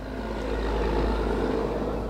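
A passing road vehicle: a smooth rushing noise that swells through the first second and stays up to the end, over a steady low rumble.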